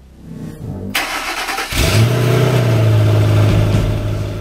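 A whoosh about a second in, then a car engine starting just before two seconds in, its pitch rising briefly and settling into a steady run.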